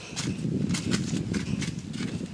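Footsteps crunching on dry leaf litter, a quick uneven series of crackles over a low rumble.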